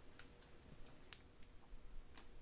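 Faint clicks and crinkles of fingers picking at and peeling the red backing layer off an adhesive jumbo sticky round, with one sharper click about a second in.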